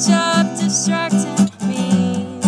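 Steel-string acoustic guitar strummed in a steady rhythm, about four strums a second, under a woman's singing voice. The strumming breaks off briefly about one and a half seconds in.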